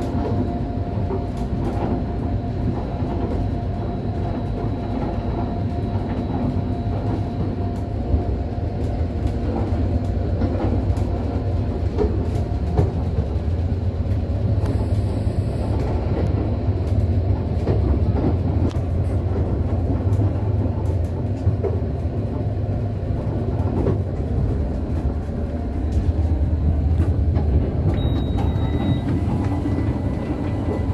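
Running noise inside a Russian Railways double-deck passenger coach: a steady low rumble with scattered clicks and knocks from the wheels and car body, and a short high beep near the end.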